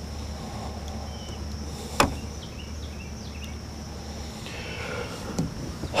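Outdoor ambience: a steady high insect drone with a low hum beneath it that stops about four seconds in. A single sharp knock about two seconds in, and a fainter one near the end.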